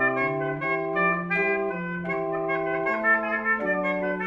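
Small positive pipe organ playing several parts at once in a slow baroque basso continuo style. A low bass line of held notes steps to a new note every half second or so, under sustained chords and moving upper notes. Every note holds at full strength until released, with no piano-like decay.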